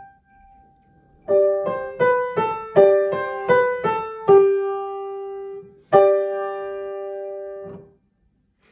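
Upright piano played as a right-hand melody. After a short pause comes a quick run of single notes, then a held note. A last note is struck about six seconds in and rings for nearly two seconds before it is released.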